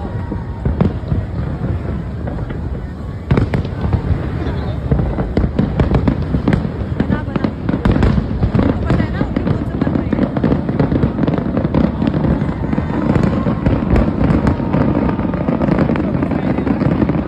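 Aerial fireworks going off in rapid, continuous bangs and crackles, getting denser and louder about three seconds in.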